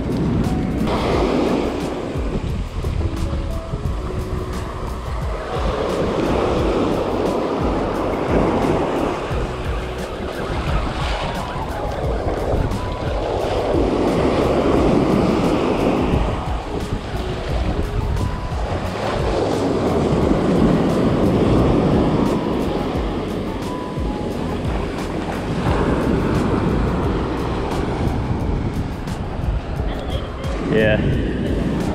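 Ocean surf washing onto the beach in slow swells, one every six or seven seconds, with wind rumbling on the microphone.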